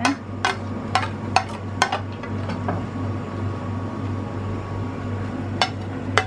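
A spoon clinking and scraping against a ceramic bowl while sauce is scooped out: about five knocks in the first two seconds and one more near the end, over a steady low kitchen hum.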